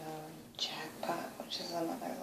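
A woman's voice talking quietly, half-whispering to herself.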